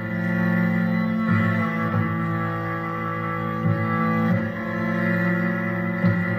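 Cello bowed in long sustained notes, layered with looped cello parts from a loop station into a steady sound of several held pitches. New bowed notes come in every second or two.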